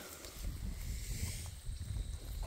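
Faint rustling of grass and weeds being pulled by hand from the soil of a fabric grow bag, over a steady low rumble.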